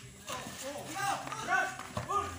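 Several voices shouting and calling out during a pickup basketball game, loudest about a second and a half in, with a few short knocks beneath them.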